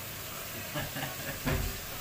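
Chicken frying in a pan on a gas hob, a steady sizzle, with a thump about one and a half seconds in.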